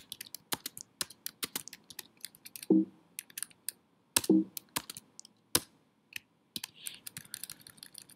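Typing on a computer keyboard: irregular quick key clicks while code is being typed. A voice makes two short low sounds, one a little before the middle and one near it, with no words.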